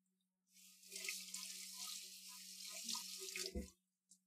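Kitchen sink tap running into the basin for about three seconds. It starts about half a second in and stops just before the end, with a low knock as it stops.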